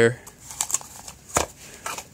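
A few light clicks and knocks from handling a smartphone as it is set down on the flat platform of a homemade wheel bubble balancer. The loudest knock comes about a second and a half in.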